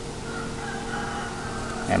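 Faint, drawn-out call of a distant bird over a steady low background hum; a man's voice begins at the very end.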